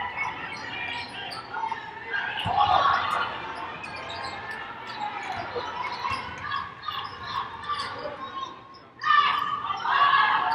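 A basketball being dribbled on a hardwood arena court during live play, with players' and coaches' voices calling out across the court.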